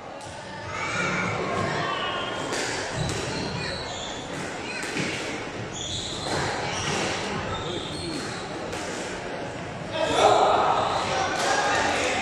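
Squash rally: the ball struck by rackets and hitting the court walls, a sharp hit about every second.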